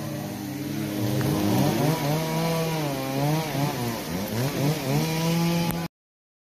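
Chainsaw engine running and revving up and down repeatedly while cutting a storm-felled tree, then stopping abruptly near the end.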